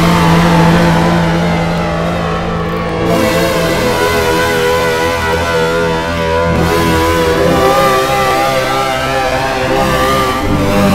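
Electric guitar played through a custom Max/MSP effects patch with distortion, modulation and shimmer chained together: a loud, sustained, heavily processed tone. Its pitch lines waver, and the low notes shift about three seconds in.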